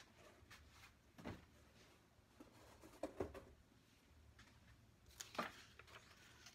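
Mostly near silence, broken by a few faint rustles and light taps from paper pattern pieces being handled on a cutting mat, the clearest near the end.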